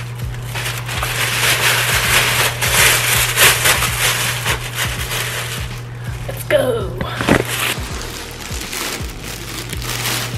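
Thin black plastic garbage bag crinkling and rustling as it is handled and gathered closed, densest in the first six seconds, with a few squeaky strokes of stretched plastic later, over background music.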